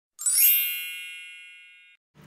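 A bright chime sound effect: a single ringing stroke with many high tones and a sparkle at the top, which starts a moment in, then slowly fades away and cuts off suddenly at the end.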